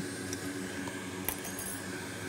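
Steady low hum of workbench equipment, with one faint click about a second and a quarter in.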